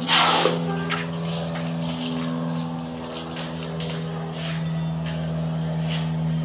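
Water dumped from a plastic bucket splashes loudly for about half a second at the start, over a steady low hum that runs throughout.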